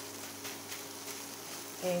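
Egg omelette with sausage and cheese sizzling in a frying pan as a wooden spatula stirs it, a steady hiss with faint crackles.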